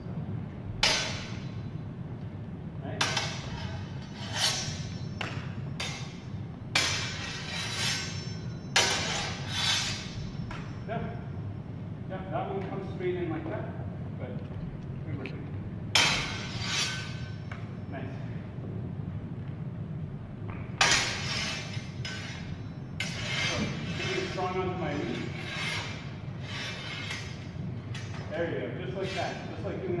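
Steel training longswords clashing blade on blade as cuts are met and parried: about a dozen sharp metallic clanks with brief ringing, coming singly and in quick pairs at uneven intervals.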